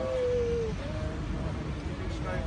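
A long, drawn-out vocal call that falls slightly in pitch, then a shorter one, over a steady low rumble.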